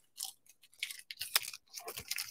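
Green painter's tape being peeled off watercolour paper: a faint, irregular run of small crackles and ticks.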